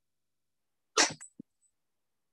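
A person sneezing once about a second in: a single short, sharp burst.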